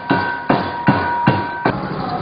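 Dasai dance drumming: hand drums beaten in a steady rhythm, about two and a half strokes a second, under a ringing metallic tone that is held across the beats. The drumming and the ring stop together shortly before the end, leaving street noise.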